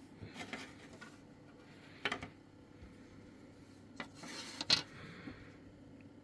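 Faint handling of a light plastic radio case: a few small clicks and knocks, the clearest about two seconds in and about three quarters of the way through, with a short rubbing sound just before the last one.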